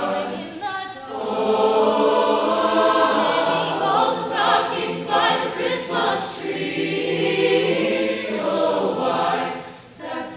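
Mixed high school choir singing with a female soloist out in front; the singing dips briefly at a phrase break about a second in and again near the end.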